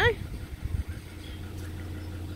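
A steady low mechanical hum, with a few soft knocks about a second in.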